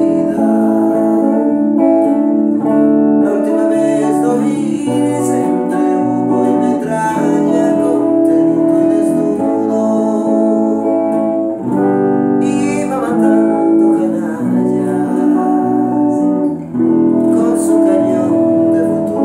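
An acoustic guitar and an electric guitar playing together, picking and strumming a continuous chord progression.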